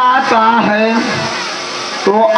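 A voice singing a devotional verse in a drawn-out, wavering melody, with live stage music accompaniment; the sung note trails off and the sound softens in the second half.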